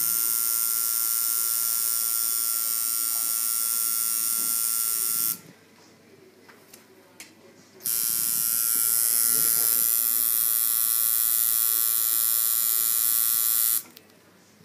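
Coil tattoo machine buzzing steadily as it tattoos skin. It stops for about two and a half seconds around five seconds in, then runs again until it cuts off just before the end.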